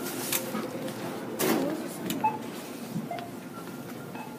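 Steady store background noise with the rustling and a few knocks of a handheld phone being moved about and handled close to the microphone.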